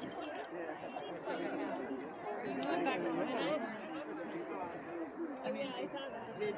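Spectators' chatter: many overlapping voices talking at once, with no single clear speaker, at a steady level.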